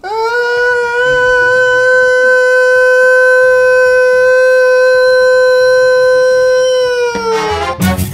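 A man's voice imitating a school or factory siren: one long, loud, steady held note lasting about seven seconds. It slides up at the start and falls away in pitch near the end.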